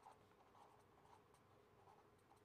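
Faint scratching of a marker pen writing letters on paper, in short strokes, over a faint steady hum; overall close to silence.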